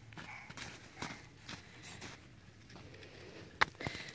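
Footsteps crunching in deep snow, a soft crunch every half second or so, with a sharp knock near the end.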